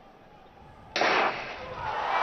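After a hush, a starting gun fires about a second in with a sharp crack, and the stadium crowd's cheering rises as the race gets under way.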